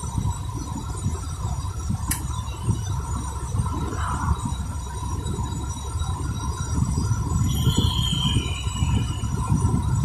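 Road and engine noise inside a moving car's cabin: a steady low rumble, with one sharp click about two seconds in.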